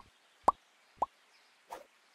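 Animated like-and-subscribe end-screen sound effects: three quick cartoon pops, each a short upward-bending blip, about half a second apart. A brief soft swish follows near the end.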